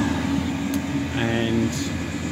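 Chinese diesel air heater running with a steady hum from its blower and burner.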